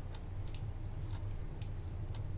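Water dripping, with irregular drips scattered over a steady low hum.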